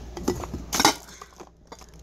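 Glass jars clinking against each other as they are handled in a cardboard box: a few short, sharp clinks, the loudest just under a second in.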